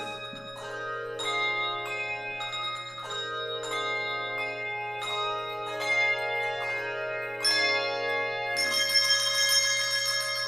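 Bells playing a slow melody of single struck notes, each ringing on into the next, growing louder and brighter with several notes sounding together near the end.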